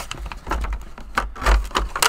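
Handling noise from a hand vacuum and its parts being lifted and shifted in a cardboard box: irregular rustles, scrapes and soft knocks with low bumping, loudest about one and a half seconds in.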